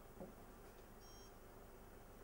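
A single short, high electronic beep from the ultrasound scanner about a second in, as the caliper measurement of the vessel diameter is set. Otherwise near silence, with a faint soft knock just before.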